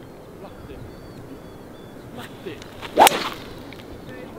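TaylorMade Qi10 three-wood striking a Titleist Pro V1x golf ball off the tee: one sharp, loud strike about three seconds in, a well-struck shot.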